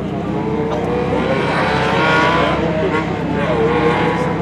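Ferrari 512 TR's flat-twelve engine under acceleration as the car drives past on the track. The engine note climbs and is loudest about two seconds in, then rises again near the end as the car pulls away.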